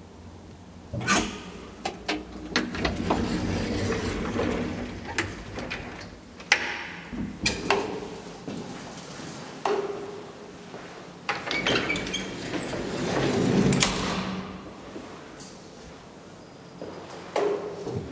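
An old elevator's barred metal car gate and doors being slid and pushed open and shut: a run of sharp clacks and clanks with stretches of rattling in between.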